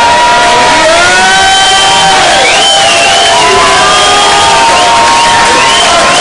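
A club crowd cheering and shouting, many voices whooping and calling over one another, loud and steady throughout.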